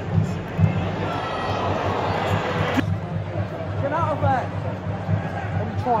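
Football stadium crowd noise: a dense din of fans' voices under a steady low rumble, with individual voices shouting out near the end. The sound changes abruptly about three seconds in.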